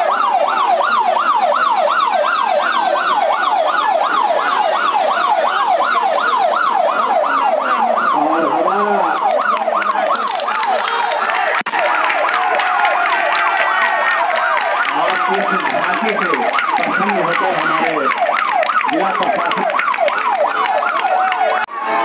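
Electronic siren in a rapid yelp, its pitch sweeping up and down several times a second. About halfway it breaks off briefly, giving way to steadier electronic tones with a fast, even ticking over crowd voices.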